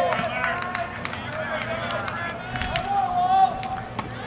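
Several voices shouting and calling out at once, with one long held call about three seconds in.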